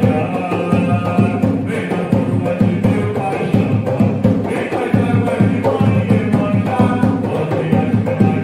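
An Umbanda ponto (devotional chant) sung by a man into a microphone, over an atabaque hand drum struck with bare hands in a steady, driving rhythm.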